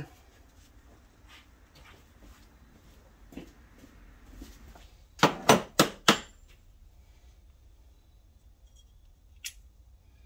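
Hand tools being handled on a workbench: four sharp clacks in quick succession about five seconds in, then a single click near the end.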